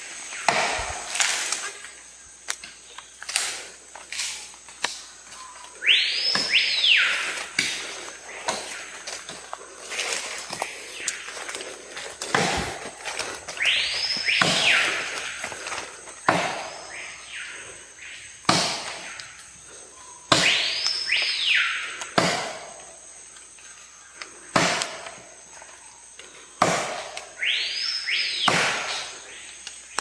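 Metal axe chopping into a tree trunk, one blow every second or two. Rainforest sounds run underneath: a bird call of two arching notes repeated about every seven seconds over a steady high insect trill.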